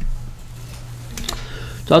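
A few faint clicks over a steady low hum during a pause, with a man's voice starting just at the end.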